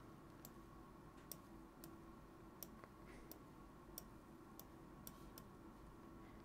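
Near silence with about nine faint, irregularly spaced computer mouse clicks as a chart on screen is zoomed out, over a faint steady hum of room tone.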